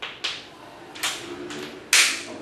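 Chalk on a chalkboard: a few short scratchy strokes and taps as a word is written, with a louder, sharper stroke near the end.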